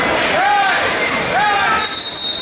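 Shouts from the mat-side, one short yell that rises and falls in pitch about once a second, over the general noise of a gym crowd. Just before the end a high, steady, whistle-like tone starts.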